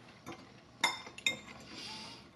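Metal fork clinking against a dish twice, under a second apart about midway, each clink ringing briefly, followed by a soft scrape as pasta is picked up.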